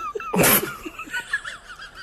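A sudden loud burst of a person's laughter, sneeze-like, about half a second in, over a high wavering squeaky sound that runs throughout.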